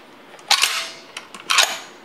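Steel action of a Winchester 1895 lever-action rifle being worked by hand: two sharp metallic clacks about a second apart, each ringing briefly, with a few faint clicks between.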